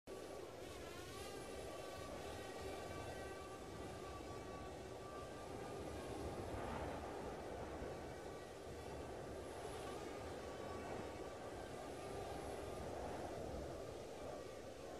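Drone motors and propellers whining steadily over a rushing noise. The whine's pitch dips and rises about a second in.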